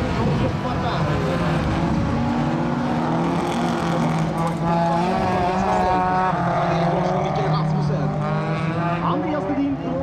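Several folkrace cars racing, their engines running together with a steady low drone while higher engine tones rise and fall as the cars accelerate and lift off.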